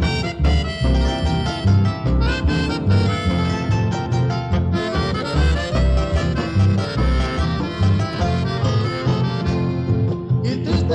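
Instrumental passage of Paraguayan conjunto music from a 1976 recording: a reed-like melody over a steady bass beat, with no singing.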